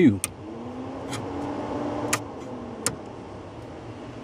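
A toggle switch clicks and an electric radiator cooling fan on a 1997 GMC K1500 pickup spins up, its hum rising in pitch, then sinks away after another click near three seconds in; a few more sharp clicks come in between.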